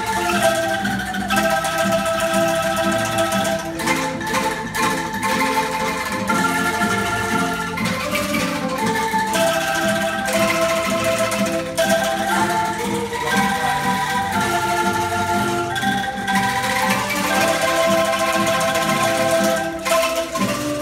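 A children's bamboo angklung ensemble playing a slow melody, each note a shaken bamboo rattle held for a second or two, with several notes sounding together as chords.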